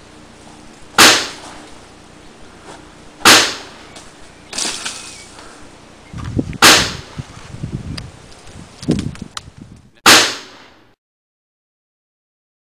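Four loud, sharp pistol shots a few seconds apart, each with a short echoing tail.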